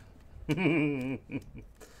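A man's short laugh, a wavering voiced burst starting about half a second in and lasting under a second.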